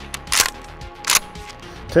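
Pump-action 12-gauge shotgun being worked by hand: two sharp metallic clacks about three-quarters of a second apart, the slide racked back and forward.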